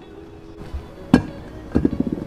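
Background music with a steady tone, broken by one sharp knock about a second in and a few quicker knocks near the end.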